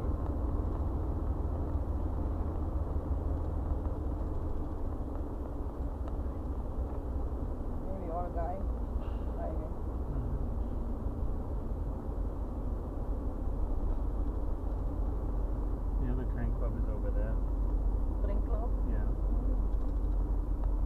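Car cabin road and engine noise while driving at moderate speed: a steady low rumble that grows a little louder in the second half.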